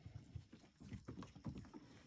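Faint, irregular soft taps and thumps of a raccoon cub's paws and claws on wooden deck boards as it walks up and rises onto its hind legs.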